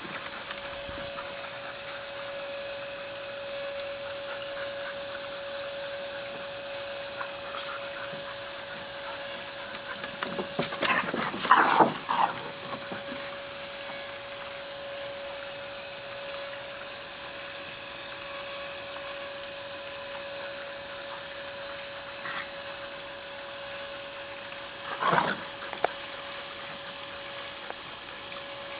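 Dogs at play, with two short bursts of vocalising, one about a third of the way in and one near the end, over a steady faint hum.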